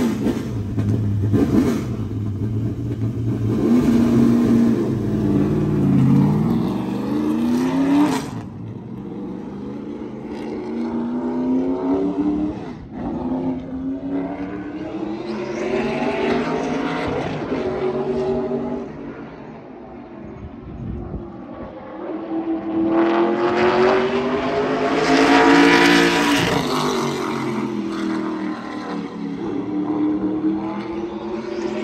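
Late model stock car's V8 racing engine revving as the car pulls away, then rising and falling in pitch as it laps the track, loudest as it passes about three-quarters of the way through.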